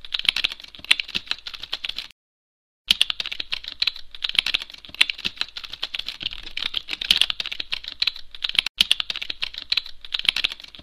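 Keyboard typing keystrokes, a fast, uneven run of sharp clicks. The typing stops for under a second about two seconds in, then carries on, with one very brief break near the end.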